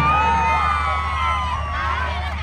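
Crowd of voices cheering and shouting, many long high calls overlapping, over a steady low hum.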